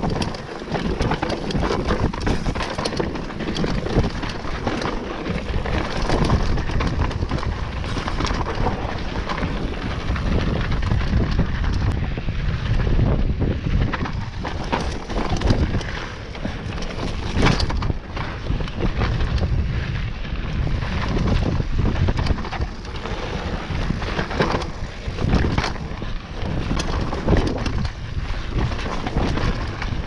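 Mountain bike ridden fast down a rocky dirt trail: steady wind rush on the microphone, with tyre noise on dirt and frequent clanks and rattles of the bike over bumps.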